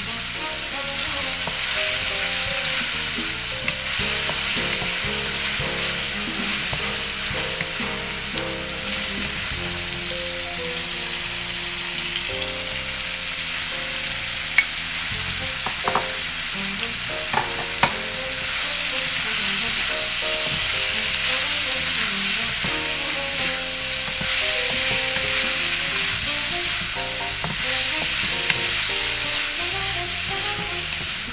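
Meat and garlic frying with a steady sizzle in a carbon-steel wok, stirred with a wooden spatula. A few sharp knocks of the spatula on the wok come about halfway through.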